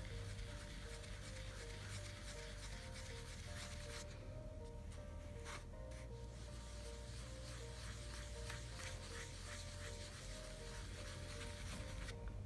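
A dome-shaped ink blending tool rubbed lightly over paper, laying down ink in a soft, continuous scrubbing, under quiet background music.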